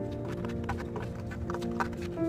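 Scissors snipping through paper, an irregular run of short clicks, over background music with held tones.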